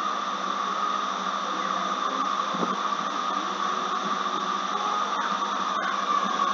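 Steady background hiss with a constant hum underneath, unchanging throughout and with no speech.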